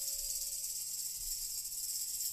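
Quiet passage of experimental rock: a steady high hiss, with the last of a held flute note fading out about half a second in.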